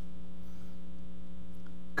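Steady electrical mains hum in the sound system, a low buzz with several overtones, holding level and unchanging with nothing else over it.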